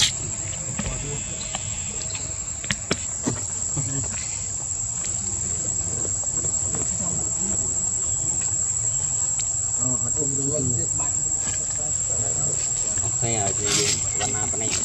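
Steady, unbroken high-pitched drone of insects in the forest, one even tone throughout. A few short, faint voices come through near the end.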